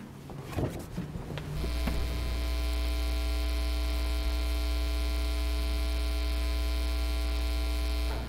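Electrical mains hum in the audio feed: a steady buzz with many evenly spaced overtones that cuts in suddenly about a second and a half in and stops abruptly at the end. A faint knock and rustling come before it.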